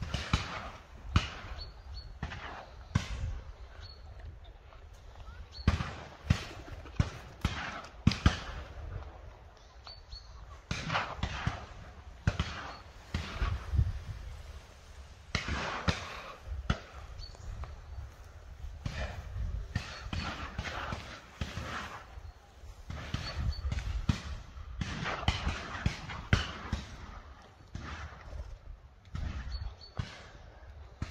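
Shotgun shots at a driven pheasant shoot: many sharp reports at irregular intervals, some close together, over a steady rushing background.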